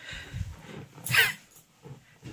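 Golden retriever shifting about on bedding, with a rustle of the blanket, then one short, sharp huff from the dog about a second in, the loudest sound.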